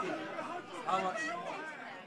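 Quiet background chatter of several people talking at once.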